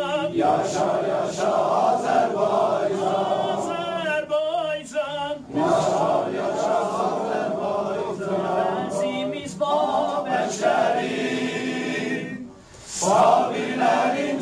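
A crowd of men singing together in unison, the song broken by a short pause about four and a half seconds in and a brief drop near the end.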